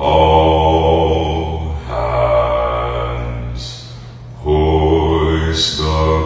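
Background music: low, droning chant-like held tones that shift every couple of seconds, with two rising whooshes, one about three and a half seconds in and one near the end.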